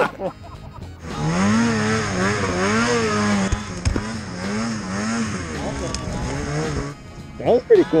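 Snowmobile engine at high revs, its pitch swelling up and down over and over as the sled carves through powder, with a steady high whine above it. It starts abruptly about a second in and cuts off about a second before the end.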